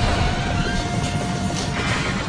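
Big-rig truck and trailer rolling along a highway with a steady road rumble, while the trailer's lowered metal ramp drags on the asphalt, giving a thin steady scraping screech that fades out near the end.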